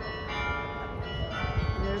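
Carillon bells in the Belfry of Bruges playing, several bells struck one after another so that their notes ring on over each other, with fresh strikes about a quarter second in and again just past the middle.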